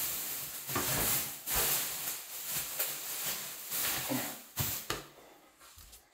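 Thin plastic tube sheeting rustling and crinkling in uneven surges as it is pulled down over a toilet, dying away about five seconds in.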